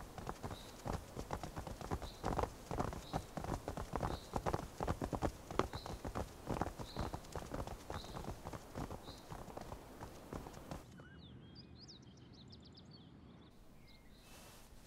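Hard footsteps of several people walking on stone, in a dense, uneven patter of knocks that stops abruptly about eleven seconds in. After the cut, a few faint high chirps follow.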